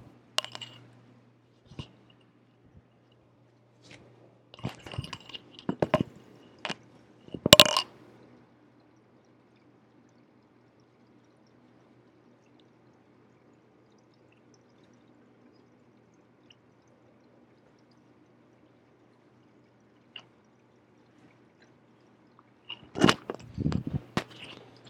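Handling noises from a t-shirt being pulled off: scattered rustles and sharp clicks and knocks through the first eight seconds, the loudest near the end of that stretch. Then a long quiet spell with only a faint low hum, and a few more handling sounds near the end.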